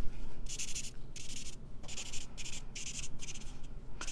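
Felt tip of a Stampin' Blends alcohol marker scribbling on vellum cardstock: a quick series of short strokes, about two a second.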